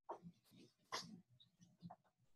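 Near silence: room tone with three faint, brief sounds about a second apart.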